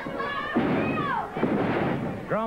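Two heavy thuds as a wrestler is knocked down onto the ring canvas, the first about half a second in and the second near a second and a half, each with a short ring of echo, over shouts from the studio crowd.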